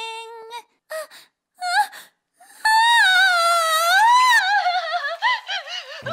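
A high-pitched cartoon girl's voice crying: a few short whimpers and sobs, then from about two and a half seconds in one long, loud, wavering wail that sinks slowly in pitch.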